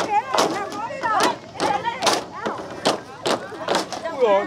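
Bamboo poles of a bamboo-pole dance being clapped together and knocked on the base poles, a steady rhythm of sharp wooden clacks a little over two a second, with people talking over it.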